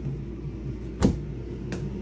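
A small storage cabinet door being pushed shut, closing with one sharp knock about a second in, over a steady low hum.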